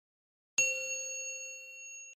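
A single bell-chime ding, the notification-bell sound effect of a subscribe animation. It strikes about half a second in and rings on, slowly fading.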